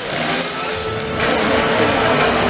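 Stunt motorcycle and car engines revving as they drive around the arena, louder from about a second in, with show music playing underneath.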